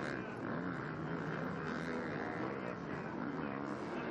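Motocross bike engines running on the track, giving a steady drone with small shifts in pitch.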